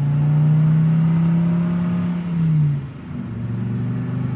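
Car engine pulling away: the engine revs up steadily, drops off just under three seconds in as if shifting gear, then runs on at a lower pitch.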